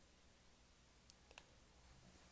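Near silence: faint room tone with two brief faint clicks a little past a second in.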